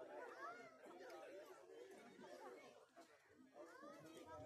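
Faint chatter of several voices talking at once.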